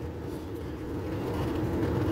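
Car driving at low speed, heard from inside the cabin: a steady low rumble of engine and tyres that grows gradually louder toward the end.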